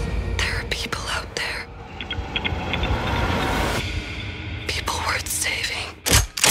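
Ominous trailer score: a steady deep drone, with whispered voices coming and going over it.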